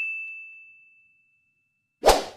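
A bright, bell-like 'ding' sound effect for an animated like button: one high ringing tone that fades out within about the first second.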